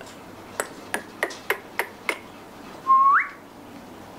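A person snaps their fingers six times in quick succession, about three snaps a second, then gives one short whistle that rises in pitch. The whistle is the loudest sound.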